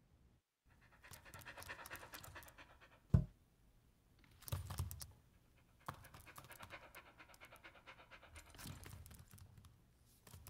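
A dog panting in quick repeated breaths, with one sharp thump a little after three seconds in.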